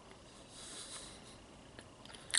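Soft, close-miked chewing of a grilled cheese sandwich with the mouth closed: a quiet hiss that swells in the first second, and a faint click near the end.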